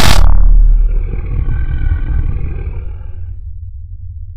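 A creature's roar, a horror-film monster sound effect. A dense loud blast cuts off just after the start and a long, pitched roar follows, fading out after about three seconds. A steady low rumble runs underneath.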